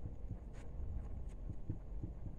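Felt-tip marker writing on a whiteboard: faint short strokes and taps of the pen tip, over a low steady room rumble.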